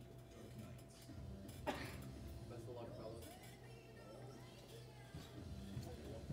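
Faint background voices and music over a steady low hum, with one sharp click a little under two seconds in.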